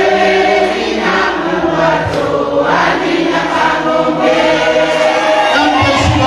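A group of voices singing a song together in chorus, with long held notes.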